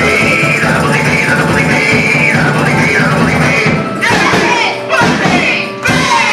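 A small indie punk rock band playing loudly live, with electric guitar, drums and a voice sliding up and down in pitch. The low end drops out briefly twice near the end.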